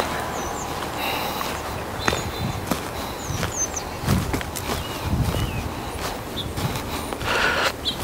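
Footsteps scuffing and crunching over mulch-covered ground while walking, with birds chirping briefly now and then.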